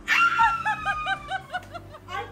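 A woman's high-pitched squeal of surprise, held for about a second and a half and slowly falling, with a quick run of laughter, about six short ha's a second, over it.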